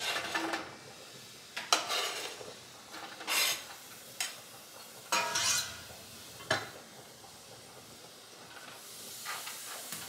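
Sliced mushrooms and diced onion scraped off a cutting board into a hot stainless steel pan of melted butter and oil, sizzling in several bursts as they land. Sharp taps at about 2 s and 6½ s, with a faint steady sizzle toward the end.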